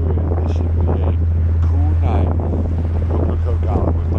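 Steady low drone of the ferry's engines at the back of the boat, with wind buffeting the microphone.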